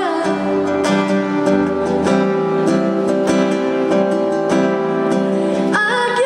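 Acoustic guitar playing a short instrumental passage of plucked chords in a steady rhythm, with a woman's singing voice coming back in near the end.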